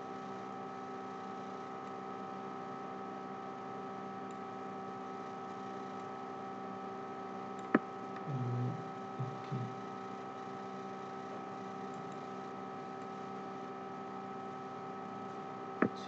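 Steady electrical hum made of several tones, with one sharp click about eight seconds in and a few brief low sounds just after it.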